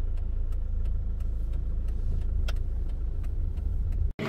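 Steady low rumble of a car running, with a few faint clicks over it.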